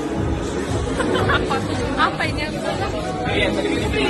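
Several people's voices chattering over background music.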